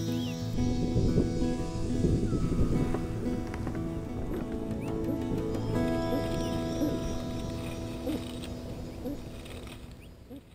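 Background music of sustained held chords, fading out toward the end. A dense crackling rustle sounds under it in the first few seconds, with a few short high chirps.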